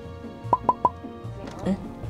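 Three quick cartoon pop sound effects, about a sixth of a second apart, over steady background music.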